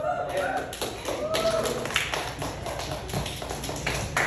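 Small audience clapping as a stand-up set ends, with voices over the claps in the first couple of seconds.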